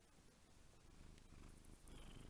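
Domestic cat purring faintly into a microphone held close to it, a low pulsing rumble that grows a little louder in the second half.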